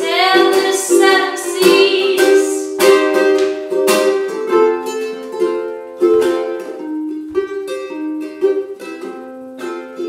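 Ukulele strummed in chords while a woman sings, her voice strongest in the first few seconds.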